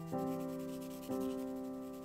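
Background piano music playing slow chords, a new chord struck about once a second and left to ring and fade.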